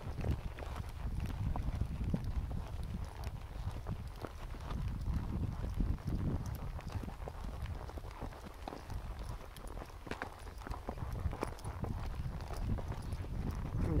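Horse's hooves clopping on a dirt trail, heard from the saddle, with wind rumbling on the microphone.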